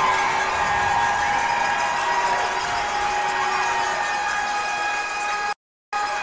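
An arena goal horn blares steadily over a cheering crowd, signalling a home-team goal. It breaks off abruptly near the end.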